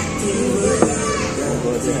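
Background music with children's voices and people talking in a busy cafe.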